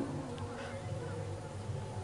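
Steady low electrical hum from the stage's microphone and public-address system, heard in a pause between a man's amplified phrases.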